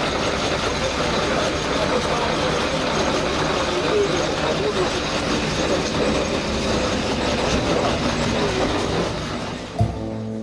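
A steady noise like a heavy vehicle running nearby, with people's voices faint beneath it.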